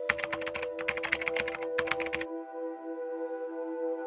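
A quick run of keyboard-typing clicks that stops a little over two seconds in, over ambient music holding long steady notes.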